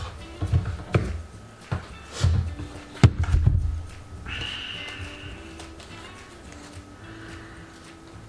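Background music with steady held notes, and a run of knocks and bumps from cables and packaging being handled in the first half, the loudest about three seconds in.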